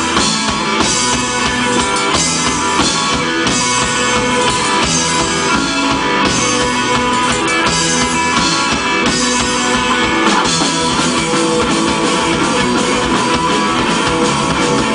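Live hardcore punk band playing a song at full volume: distorted electric guitars, bass and a drum kit driving a steady, fast beat.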